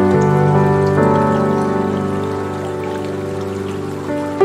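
Soft background piano music holding sustained, slowly fading chords, with new notes coming in about a second in.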